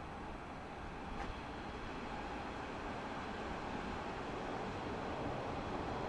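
A Hanshin 5500 series electric train approaching from a distance: a steady low rumble of running noise that slowly grows louder, with a single faint click about a second in.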